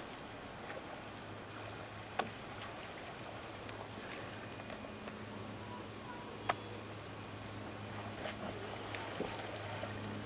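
Quiet background with a faint, steady low hum and two short, sharp clicks, one about two seconds in and one about six and a half seconds in.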